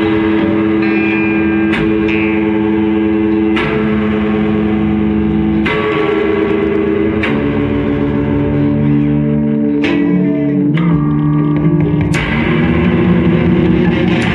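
Two electric guitars played live through amplifiers in an improvised duo. Held, droning notes ring out, and a new chord with a sharp attack comes every two seconds or so.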